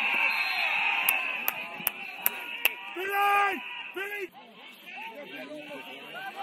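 Players and spectators shouting across a football pitch, with five sharp, evenly spaced claps in the first half and one loud drawn-out shout about three seconds in.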